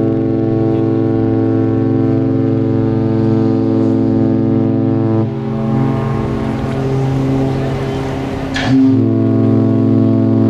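Cruise ship's horn sounding a long, steady chord of several notes at once. About five seconds in it breaks off into a stretch of noise, then comes back with a sharp knock near nine seconds.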